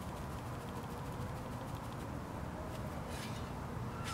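A crabgrass clump pulled up by hand out of shovel-loosened soil, with a brief rustle of roots and soil tearing free about three seconds in, over a steady low outdoor rumble.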